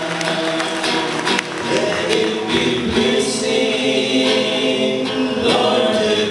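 A group of men singing a gospel song together into microphones, accompanied by a strummed acoustic guitar.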